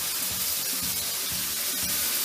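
Pork pieces with onions and bell peppers frying over high heat in a pan, a steady sizzle as a splash of white wine cooks off. Faint music plays underneath.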